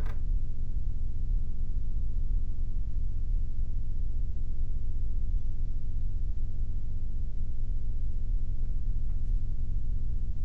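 Steady low hum and rumble of room or recording noise, with no distinct event; a faint tick near the end.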